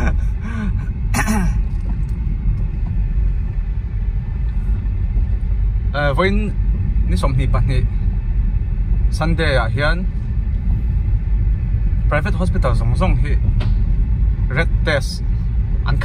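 Low, steady road and engine rumble heard from inside a moving car's cabin, with short bursts of a person's voice every few seconds.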